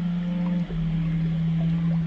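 Ambient meditation music: a low, steady drone note that steps down in pitch about two-thirds of a second in, with faint short pings scattered above it.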